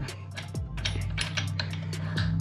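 A string of light, irregular metallic clicks and taps as a motorcycle's rear axle is worked into the swingarm and wheel hub, over a steady background music bed.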